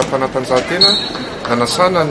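A man speaking, with a brief high, steady tone like a whistle just under a second in.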